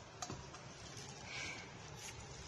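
A few faint clicks and taps of small makeup containers being handled.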